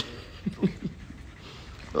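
A sharp click, then a man's short breathy chuckles: three quick laughs, each falling in pitch, about half a second in.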